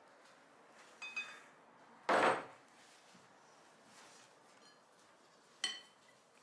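Glass kitchenware being handled: a glass measuring jug and a silicone spatula against a large glass bowl as liquid is poured and scraped out. A light ringing clink about a second in, a louder brief scrape about two seconds in, and another ringing glass clink near the end.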